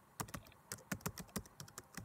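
Typing sound effect: a faint, irregular run of keyboard keystroke clicks, about five a second, as text is typed out on screen.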